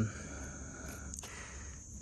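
Faint handling sounds of fingers working through the roots and soil of an avocado seedling's root ball, with one small tick about a second in, over a steady high insect drone.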